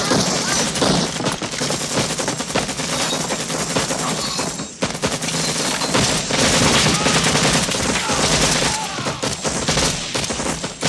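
Heavy, continuous gunfire from a belt-fed machine gun and rifles firing together in rapid bursts, with a brief lull just before the middle.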